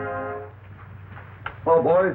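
Orchestral film score ending on a long held brass chord that fades out about half a second in. After a short gap of soundtrack hiss, a voice calls out near the end.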